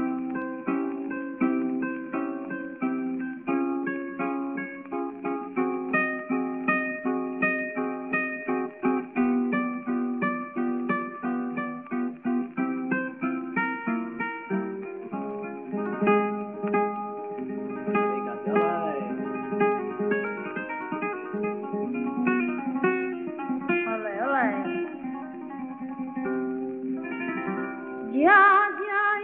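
Flamenco guitar playing the opening of a cante, fast picked runs and chords with a thin, old-recording sound lacking treble. A woman's singing voice enters with a rising sung note at the very end.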